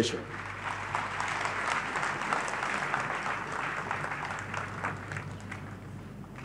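A large congregation applauding steadily, easing off slightly near the end.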